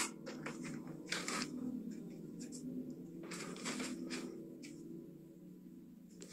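Faint, muffled sound of a TV playing in the background, over a steady low hum, with a few short hissy noises.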